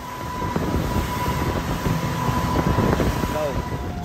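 Speedboat running at speed: a steady rush of engine, wind and water noise.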